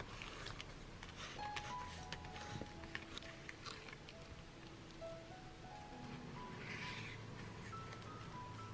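Soft background music with slow held notes, over light rustling and clicking of paper being handled, creased and slid into place, with a short rustle near the end.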